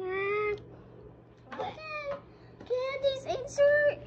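A child's high-pitched wordless vocal noises in a puppet voice, three sounds in a row, the last one longer and held steady, with a meow-like quality.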